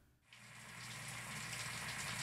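Running shower water: a steady hiss of spray that fades in from silence shortly after the start and slowly grows louder.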